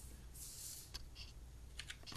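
Faint scattered clicks from hands working the controls to zoom a camera in on a worksheet: a short hiss about half a second in, then a few sharp clicks over a low hum.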